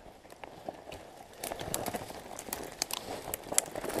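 Footsteps crunching in snow while pushing through dry brush: irregular crackling and snapping clicks of twigs and branches. They get busier from about a second and a half in.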